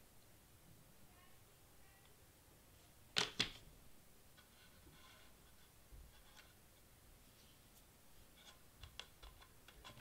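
Mostly quiet handling on a cutting mat, with two sharp knocks in quick succession about three seconds in as a hot glue gun is set down; a few faint taps and paper rustles follow as a cardstock leaf is pressed onto the foam wreath.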